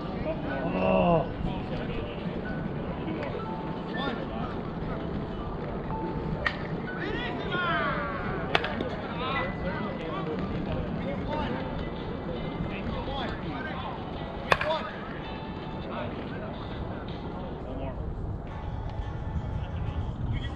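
Distant voices and calls over steady background noise, with two sharp knocks, one about eight and a half seconds in and a louder one about fourteen and a half seconds in.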